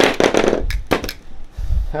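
PVC pipe and a PVC cutter being handled on a wooden workbench: a sharp crack at the start, then a few light plastic knocks and clacks.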